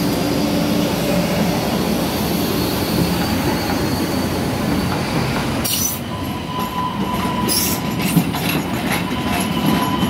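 MBTA Green Line light-rail train departing: a loud, steady rumble of motors and wheels as the cars pass close by. From about six seconds in, as the train pulls away, the rumble drops and a thin steady wheel squeal and several sharp clicks of wheels over the rail joints remain.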